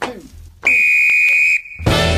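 Electronic radio-intro sound effects: a short hit falling in pitch, then a steady high beep lasting about a second, loud and level, cut off just before music starts near the end.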